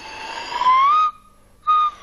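Improvised slide whistle, an empty ballpoint pen casing with a drill bit as its plunger, blown across the end: a breathy note glides up in pitch for about a second, then after a short break a second note starts high and slides down, like a swanee whistle.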